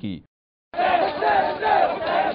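A crowd of male mourners chanting and shouting together during matam, cutting in under a second in after a brief silence.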